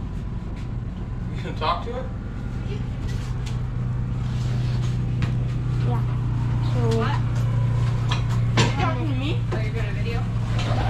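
An engine running steadily, a low hum that grows a little louder about four seconds in, with voices talking in the background.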